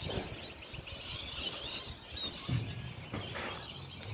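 Quiet outdoor ambience: a faint, steady background hiss, with a brief low hum about two and a half seconds in.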